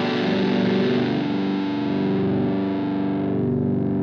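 A distorted electric guitar chord played through a multi-effects processor, held and ringing steadily, beginning to fade near the end.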